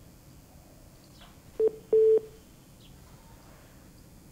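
Two electronic beeps at one steady mid pitch, a short one and then a slightly longer one, about a second and a half in, over the faint hiss of a live feed that has gone silent. The anchor puts the dead link down to a technical fault.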